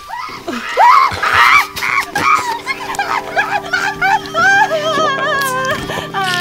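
A woman's high-pitched squeals and whining cries of distress, short at first and longer and wavering near the end, over background music with steady held notes.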